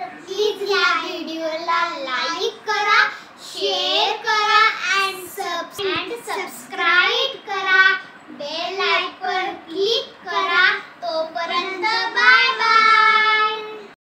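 Two young girls singing together in unison, child voices in a sing-song line that ends on one long held note near the end.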